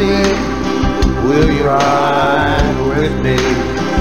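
Live worship song: a band with guitar and steady bass notes, and a male voice singing a sustained line between the lyrics.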